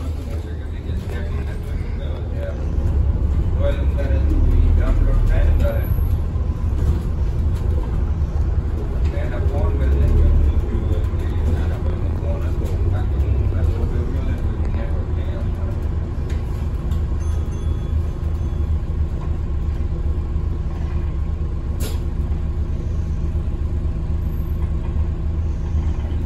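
Cabin sound inside a moving Alexander Dennis Enviro400 MMC bus: a continuous low engine and road rumble, louder in two stretches in the first half, then running steadily. A single sharp click comes near the end.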